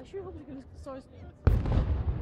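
A ceremonial cannon salute: one sudden loud boom about one and a half seconds in, with a rumbling echo trailing after it.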